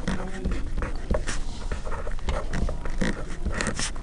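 Felt-tip pen writing on paper in a series of short scratchy strokes, a few of them louder near the end.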